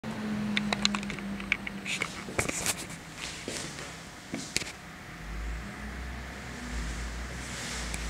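Irregular sharp clicks and knocks in a small room over the first few seconds, then a low steady rumble from about five seconds in.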